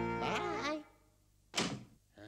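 Cartoon score on plucked strings ends with a few sliding, bending notes and fades out. After a short silence comes a single loud wooden thunk of saloon swinging doors, with a brief ringing decay.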